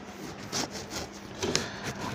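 Cloth wiping marker writing off a whiteboard: dry rubbing in a few strokes, louder about half a second in and again near the end.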